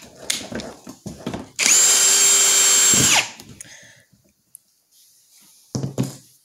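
Ryobi cordless drill boring a drainage hole in the bottom of a plastic storage container. The motor spins up about a second and a half in, runs steadily for about a second and a half, then spins down. Light knocks and handling clicks come before it, and a thump comes near the end.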